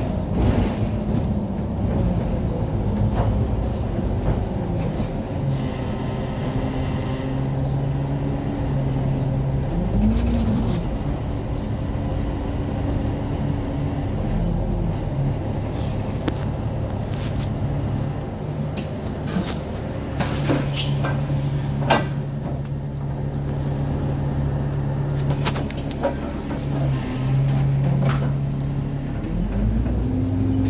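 Bus running, heard from inside the passenger cabin: a continuous low engine and road rumble with a low hum whose pitch rises and falls several times as the bus changes speed. A few sharp clicks and rattles sound in the second half.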